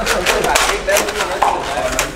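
Several people talking at once, with a quick run of sharp clicks or knocks during the first second.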